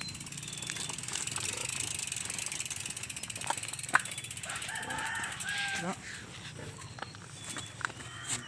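Mountain bike's rear freewheel hub ticking rapidly and evenly as the bike is pushed along on foot, with one sharp louder click about four seconds in.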